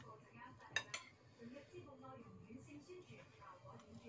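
A metal spoon clinks twice, sharp and short, against a ceramic bowl about a second in, over faint background voices.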